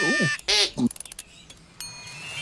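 A held, steady high note, blown on something held to the lips, ends a moment in. Voiced 'ooh' and 'mm' follow, then a quick run of clicks. Near the end a hissing rush of spray starts suddenly and grows louder.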